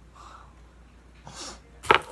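A person sneezing: a brief breath in, then one short, sharp sneeze near the end.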